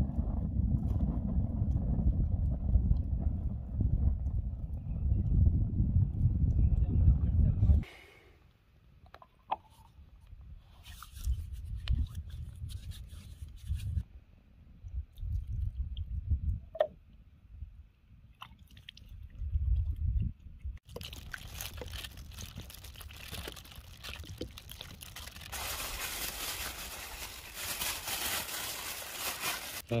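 A low wind rumble on the microphone, which stops abruptly about eight seconds in. After a stretch of scattered small handling sounds, water is poured from a plastic bottle in a steady splashing stream through the last third, washing hands and raw meat.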